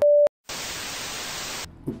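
A brief steady beep, the loudest thing here, then a short gap and about a second of even TV-style static hiss that cuts off suddenly: an editing sound effect marking a cut between scenes.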